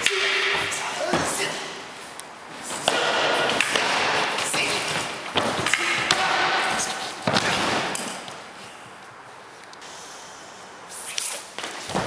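Martial arts practice on a mat: a brief shout at the start, then long stretches of scuffling and rustling cloth broken by sharp thuds and knocks of bodies, feet and wooden staffs. It goes quieter for a few seconds before another short shout at the very end.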